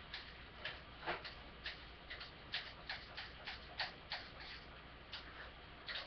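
Light, sharp clicks and taps at an uneven pace, about two or three a second, over a quiet room background.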